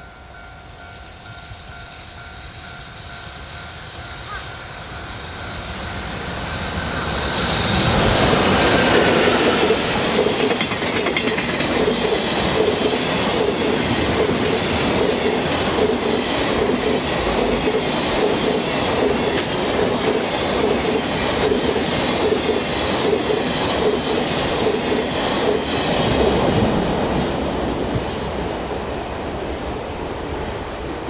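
JR Freight EF65 electric locomotive approaching and passing, hauling a long train of Koki container wagons. The sound grows louder for the first several seconds, peaks as the locomotive goes by, then holds as the wagons roll past, their wheels clattering over the rail joints in a steady rhythm.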